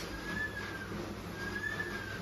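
A bird whistling a short single note twice, each about half a second long and rising slightly before falling away, over a steady background hiss.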